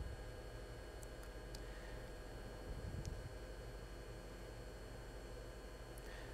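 Quiet, steady hum and hiss of running network equipment, with a few faint ticks.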